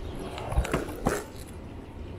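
A dog barking twice, short barks about half a second apart, over the steady low rumble of small kick-scooter wheels rolling on pavement.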